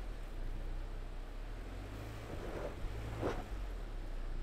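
Subaru Crosstrek Sport's 2.5-litre flat-four engine running at low revs as the car crawls over rough dirt, heard faintly and steadily from outside the car, with two short faint swells in the second half.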